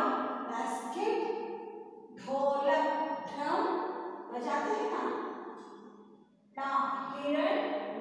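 A woman's voice reading Hindi letters and their example words aloud in slow, drawn-out phrases, with a short pause about six seconds in.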